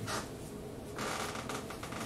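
Fabric rustling of a heavy overcoat as the wearer turns around, a soft swishing of cloth that grows louder about halfway through.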